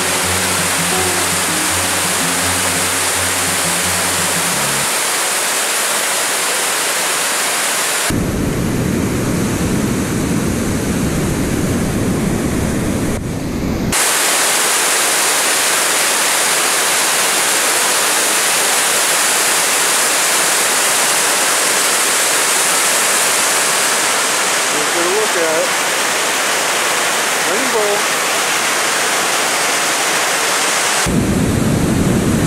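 Loud, steady rush of white water pouring over a dam spillway. For several seconds in the middle the sound turns deeper and rougher.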